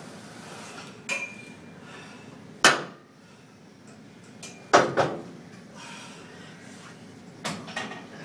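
Plate-loaded leg press machine clanking during a set: five sharp metal clanks from the steel sled and weight plates, the loudest about two and a half seconds in and a close pair about five seconds in, one with a brief metallic ring.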